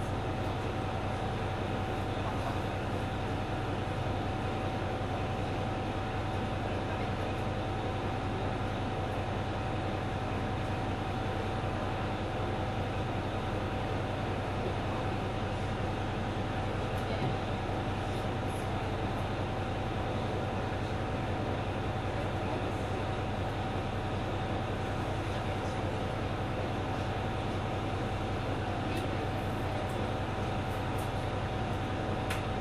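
Mizushima Rinkai Railway MRT300 diesel railcar's engine running at a steady, unchanging pitch, a low hum with a clear mid-pitched tone over it.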